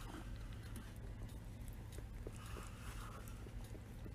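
Sticky lint roller rolling over a shedding rabbit's fur: a faint, soft rustle in a few short strokes, with a few light ticks.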